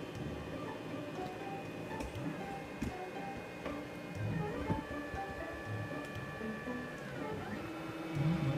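XYZprinting da Vinci 1.0 3D printer's stepper motors driving the print head in its positioning moves before printing begins. They give a whine that jumps from pitch to pitch as each move changes speed, with light mechanical knocks. About halfway through, a steady high tone holds for roughly two seconds, then slides down in pitch.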